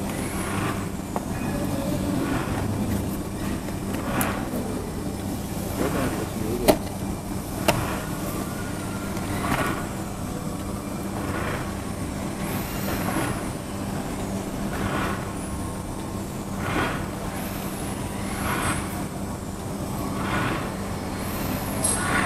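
Automatic carton packing machine running: a steady mechanical hum with repeated whooshing strokes every second or two as the machine cycles. There are two sharp clicks about seven and eight seconds in.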